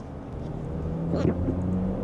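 Mazda CX-60 25S's 2.5-litre naturally aspirated four-cylinder engine heard from inside the cabin while driving: a steady, smooth hum whose pitch creeps up about a second in as the car pulls on.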